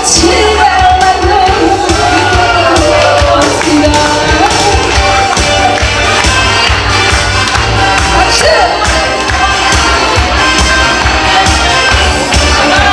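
A woman singing live into a handheld microphone over a loud backing track with a steady beat, heard in a large room. Her voice is clearest in the first few seconds; after that the backing music carries on.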